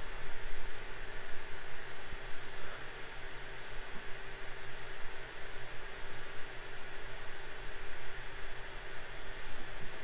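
AnkerMake M5 3D printer's print-head cooling fans running steadily, an even whirr with a faint constant tone in it.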